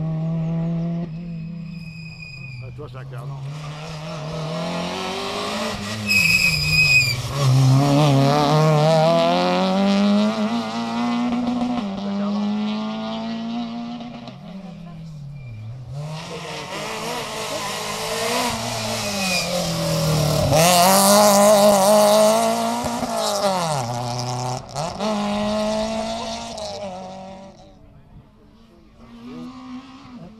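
Rally cars' engines revving hard, one car after another, with the pitch climbing and dropping at each gear change as they accelerate out of a bend. There is a brief high squeal about six seconds in.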